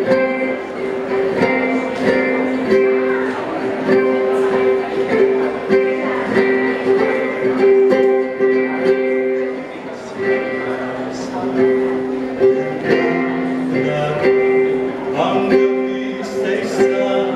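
Ukulele played steadily, its strings plucked and strummed in a continuous run of ringing chords.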